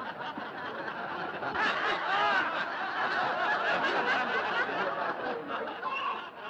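A cinema audience laughing, many voices at once, swelling louder about a second and a half in.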